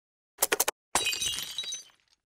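A quick run of computer-keyboard typing clicks, then a sudden glass-shattering sound effect whose high tinkling dies away over about a second.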